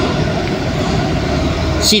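Steady outdoor background noise: a low rumble with a hiss, typical of street traffic in an open lot. A short spoken word comes right at the end.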